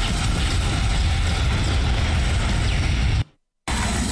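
Dense, continuous rattle of rapid automatic gunfire from an animated war video's sound effects. It cuts out suddenly for about half a second a little after three seconds in, then resumes.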